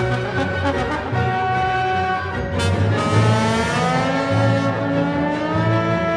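Symphony orchestra playing with solo trombone in a trombone concerto, over a repeating low pulse; from about halfway, held notes rise in a slow glide in pitch.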